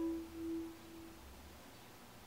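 Nord Lead synthesizer note dying away: a single pure tone, the last of a chord, that swells twice and fades out about a second in, leaving faint hiss.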